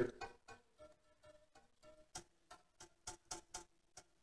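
Steel wires of a soap cutter plucked one after another, each giving a short, faint, pitched twang, about a dozen in all, irregularly spaced: the wires are being sounded to check and match their tension by pitch.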